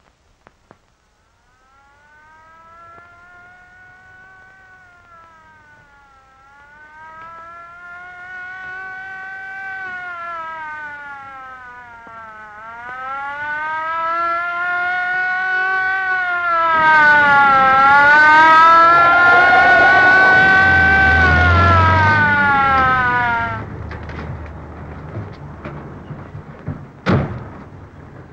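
Police car siren wailing up and down in slow rises and falls, growing louder as it approaches, with car engine noise joining in at the loudest part. The siren cuts off abruptly a couple of seconds before the end as the car stops.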